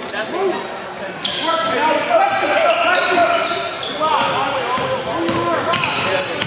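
Basketball game sounds in a gym: a ball dribbling on the hardwood court under players and spectators calling out.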